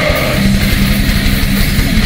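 Heavy metal band playing live: an instrumental passage of electric guitars over fast, dense drumming.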